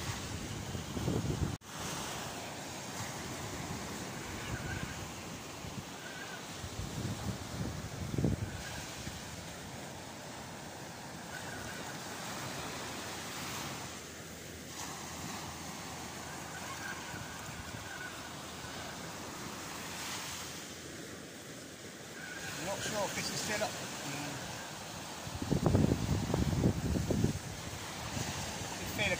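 Steady surf and wind noise on an open beach, with a sharp click about a second and a half in and louder gusts of wind buffeting the microphone near the end.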